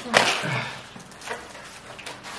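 Stiff wallpaper used as gift wrap rustling and crinkling as the string comes off and the wrapping is pulled open, with a sharp swish just after the start and a smaller rustle a little past the middle.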